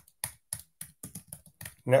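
Typing on a computer keyboard: a rapid run of keystroke clicks, about six a second, as a terminal command is entered.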